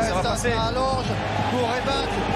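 Rugby match sound: scattered shouts and calls from players and crowd, overlapping at different pitches, over a low steady hum.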